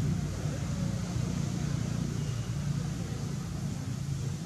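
A steady low, engine-like rumble, as of a motor running.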